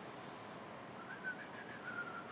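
Quiet room hiss, with a faint, thin whistle-like tone starting about a second in and lasting about a second, wavering slightly in pitch.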